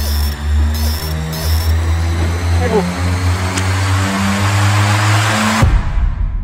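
Dark film score: low sustained bass notes that step from pitch to pitch under a swelling rush of noise, which builds and cuts off suddenly near the end.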